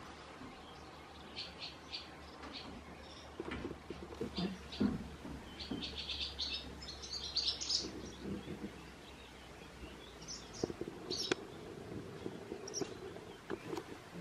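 Barn swallows calling: several runs of quick high chirps, busiest about six to eight seconds in. A few soft low thumps come in between.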